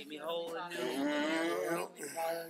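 A voice drawing out one long, wavering note on the words "made me", held for about a second and a half like a sung or chanted phrase.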